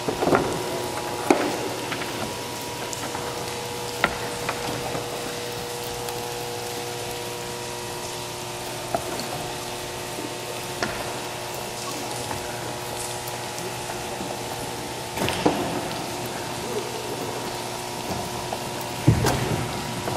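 A steady hiss under a constant hum of several fixed tones, broken now and then by sharp clicks and knocks.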